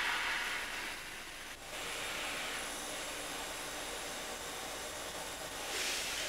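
Steady hiss of room tone, with a brief breathy noise in the first second.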